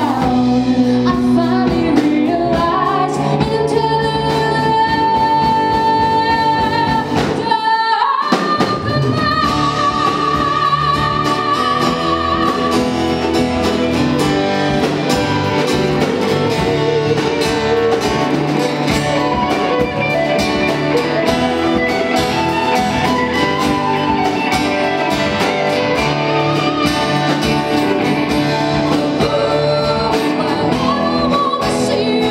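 Live rock band playing: a woman sings lead over keyboard, guitar and drums, with long held high notes in the first dozen seconds.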